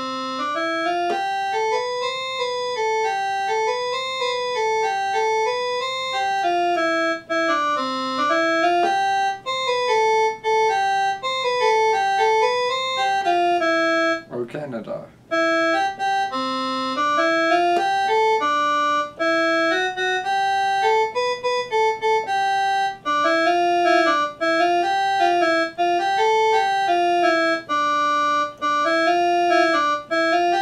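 Keyboard playing a single melody of short, stepped notes that climb and fall in repeated runs, with a brief break about halfway through.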